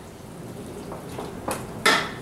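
Wooden spoon stirring chopped tomatoes in a stainless steel frying pan: a few light scrapes and clicks, then two sharp knocks of the spoon against the pan about a second and a half in.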